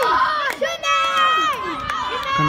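Shouts and calls from players and spectators at a women's football match: several high voices calling out, some falling in pitch, with no one talking close to the microphone.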